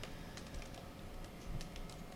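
Quiet typing on a computer keyboard: a run of irregular, light key clicks.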